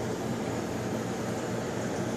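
Steady hiss with a low, even hum underneath from a running reef aquarium's equipment.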